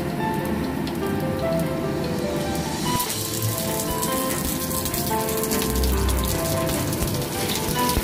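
Oil sizzling and crackling around onion rings in a frying pan on a gas flame, the crackle growing brighter about three seconds in as more rings go into the pan. Background music plays underneath.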